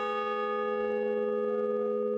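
A large hanging bell ringing out after being struck, a steady chord of several tones that barely fades.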